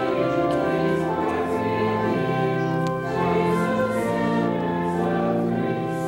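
A hymn with singing voices over sustained organ chords and a held bass line, the chords changing every second or so.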